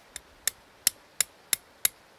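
A steel hatchet head striking the steel head of a loose axe in a run of sharp metallic taps, about three a second; the first tap is faint. The taps are working the loose axe head off its hickory handle.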